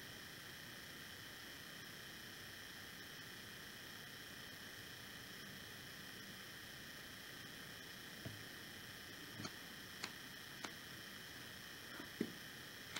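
Faint steady hiss of room tone with no other sound for most of the time. Late on come about four soft, short taps within three seconds as the candle and lighter are handled over the corked jar.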